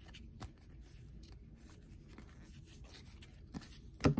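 Faint sliding and rubbing of football trading cards being shuffled through by hand, with scattered light clicks as the card edges catch.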